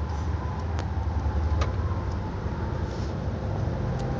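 A steady low rumble of background noise, with two faint clicks about one and a half seconds into it.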